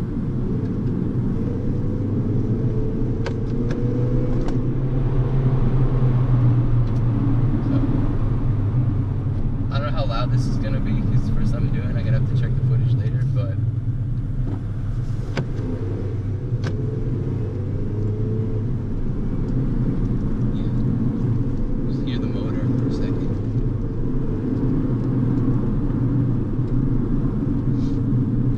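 Car engine and road noise heard from inside the cabin while driving: a steady low drone, with the engine pitch drifting up and down a little a few times.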